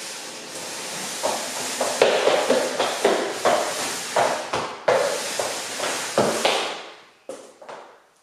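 A cardboard box scraping and sliding across a hard plank floor as it is pushed along in spurts, stopping about seven seconds in, followed by a few light knocks.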